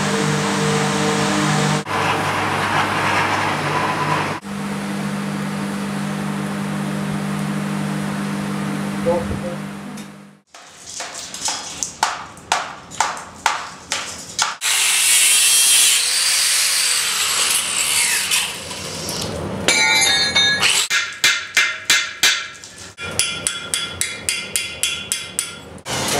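A steady low drone with held low tones. After a sudden break about ten seconds in comes a run of sharp hammer blows, about two a second, knocking the investment mould off a fresh bronze casting, then a loud rushing hiss and a second, faster run of knocks.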